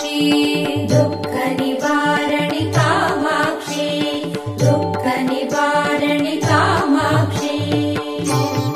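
Carnatic-style Tamil devotional music to the goddess Durga: a melody over a steady drone and a repeating hand-drum rhythm, likely an instrumental passage between sung lines.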